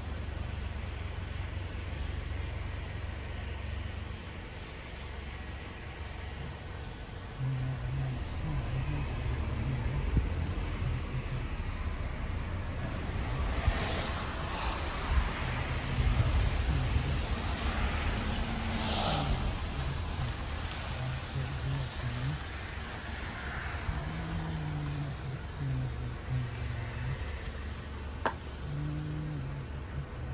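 Outdoor vehicle noise: a steady low rumble, with two louder rushes about 14 and 19 seconds in and faint low voices coming and going.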